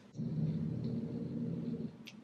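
A woman's voice humming one steady, low-pitched 'mmm' for about a second and a half.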